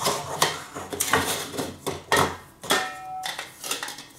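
Aluminium camping-cookset parts (windshield stand and pot) knocking and scraping against each other as they are lifted apart, with a brief metallic ring just under three seconds in.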